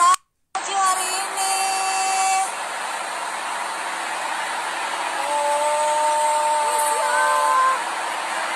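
Busy city street noise of traffic, with long steady car-horn tones: one held for about a second and a half soon after the start, and several overlapping ones in the last three seconds. The sound cuts out completely for about half a second right at the start.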